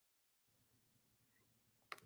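Near silence: faint room tone after a brief total dropout at the start, with one faint click near the end.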